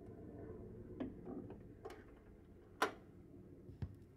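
A vinyl LP spinning on a turntable: a few sharp clicks and pops over a low steady hum, the loudest about three seconds in, typical of the stylus riding the record's surface.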